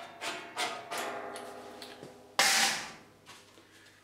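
A hand rivet nut tool's mandrel being unscrewed from a rivet nut just set in thin steel sheet: a few sharp metallic clicks, each with a lingering ringing tone. About two and a half seconds in comes a short scraping rush as the tool comes away.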